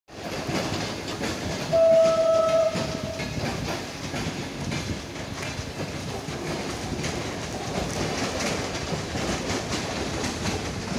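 Hyundai Rotem HRCS2 electric train sounding a single steady horn note for about a second and a half, starting about two seconds in. Its wheels rumble and click over the rail joints as it passes.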